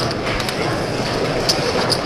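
Steady hubbub of a crowded card room, with a few sharp clicks of poker chips.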